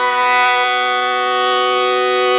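Harmonium playing long held notes, a steady chord sustained without break.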